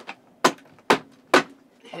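Three sharp knocks about half a second apart: a hand banging on a tight-fitting wooden floor hatch over a camper van's battery compartment, built so it doesn't rattle, to work it open.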